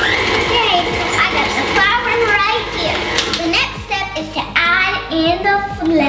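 A young girl chattering in a lively, sing-song voice over a stand mixer running with its paddle attachment, the motor a steady hum underneath.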